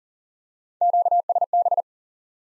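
Morse code sent as a single steady tone at 40 words per minute: a quick run of dits and dahs in three groups, spelling the Q-code QSB, starting about a second in and lasting about a second.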